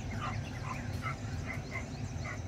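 Faint short animal calls, several a second, over a low rumbling noise.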